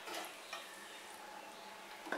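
Faint scooping of a steel spoon through soft cooked tomato and onion in a frying pan, with a light click of the spoon against the pan about half a second in.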